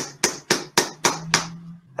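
A lid being knocked down into place: about six sharp knocks in a quick even run, about four a second, stopping about a second and a half in.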